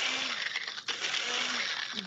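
Ninja Nutri-Blender Plus personal blender running in push-to-blend pulses, its Pro Extractor blades crushing ice cubes into fine snow. The motor cuts out briefly a little under a second in, then runs again.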